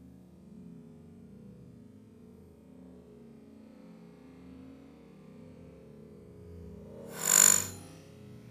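Golf club swishing through the downswing: one loud whoosh about seven seconds in that swells and fades within about half a second, over soft background music.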